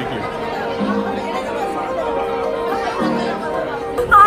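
Background music with long held notes over the chatter of a crowd.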